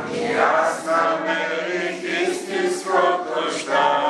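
Several voices singing together in a chant, with sustained, wavering notes.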